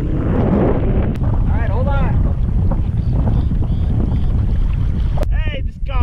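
Wind buffeting the microphone of a camera mounted on a fishing kayak, a steady low rumble, with a brief swish of water in the first second.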